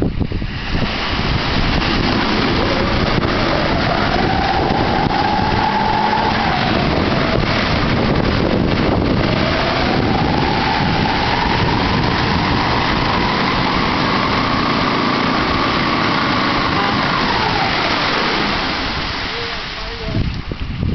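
Pickup truck stuck in deep mud, its engine revved hard with the wheels spinning and spraying mud. Two long revs, the second longer, each climbing in pitch and falling away, over a steady rush of spinning tyres and flying mud. It eases off near the end.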